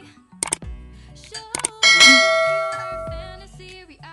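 Subscribe-button animation sound effect: a couple of short mouse-style clicks, then a bright bell ding about two seconds in that rings out and fades over a second and a half, over background music.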